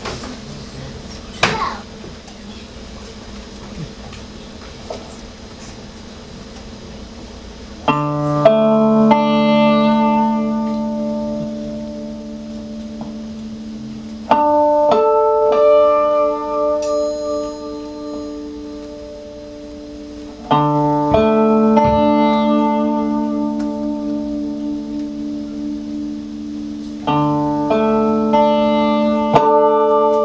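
Hand-built hybrid string instrument plucked in four phrases, each a quick run of notes whose tones then ring on and fade slowly. For the first quarter or so there is only quiet room noise and a single knock.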